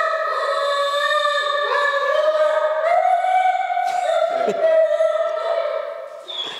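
Dog whining in one long, high, unbroken whine that wavers and steps slightly in pitch, fading right at the end.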